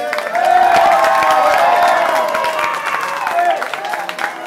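A crowd of children and teenagers cheering, laughing and clapping, the cheering swelling about half a second in and holding loud for most of the time.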